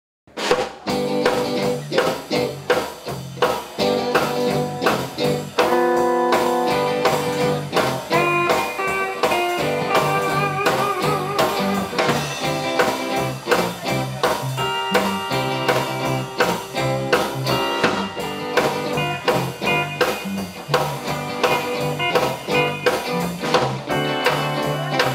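Live blues played by a small band of electric guitar, steel guitar, electric bass and drum kit: an instrumental opening with a steady beat, starting abruptly about half a second in, with a few bent, gliding notes in the middle.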